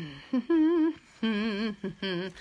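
A woman humming a short tune in several held notes with a wavering pitch and brief gaps between them.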